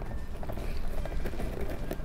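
Light clicks and scrapes of cardboard being handled as a thin cardboard piece is pushed with the fingers into a masking-taped cardboard box.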